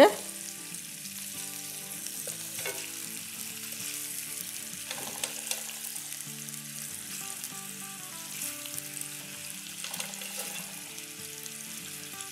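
Spaghetti-wrapped minced-meat kababs shallow-frying in oil with garlic paste in a nonstick pan over a medium flame: a steady sizzle with a few faint crackles.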